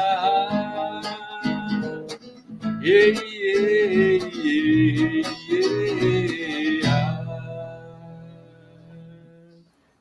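Acoustic guitar strummed under a man singing the closing phrases of a song, the voice stopping about seven seconds in; the final guitar chord rings on and fades out near the end.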